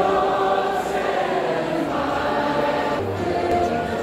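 A large crowd of several school cohorts singing the school song together in unison, in long held notes.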